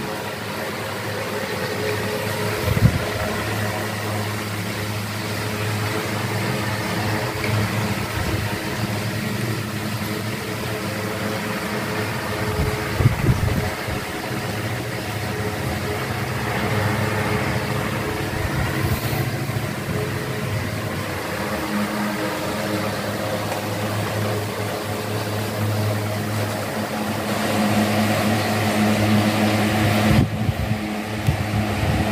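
Several electric fans running together: a steady motor hum under the rush of air from the spinning blades. A few brief thumps break in, about three seconds in and again around thirteen seconds.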